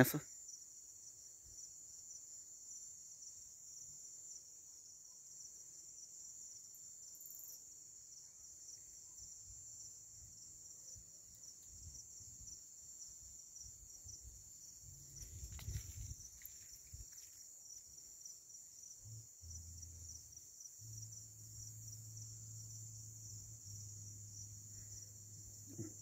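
Crickets chirring in a faint, steady, high-pitched chorus. A low rumble comes and goes underneath, and there is a brief rustle about halfway through.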